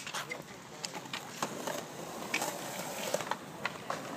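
Skatepark ambience: small wheels rolling over concrete, with scattered clicks and clacks, under faint distant voices.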